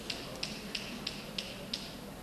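Gunfire in combat footage: a steady series of six sharp cracks, about three a second.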